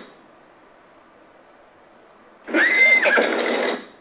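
A recorded horse whinny played back from a small handheld talking pen, once, for about a second and a half near the end. It sounds thin, with the top of the sound cut off. It rises to a high held note and then drops away.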